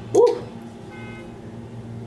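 A woman briefly says 'ouais', then there is a steady low hum, with a faint short tone about a second in.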